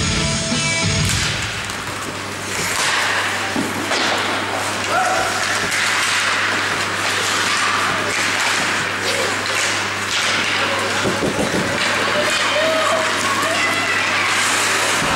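Rock music over the arena's speakers cuts off about a second in, at the faceoff. Then come ice hockey play sounds: skates scraping the ice and short knocks of sticks and puck, with crowd voices over a steady low hum.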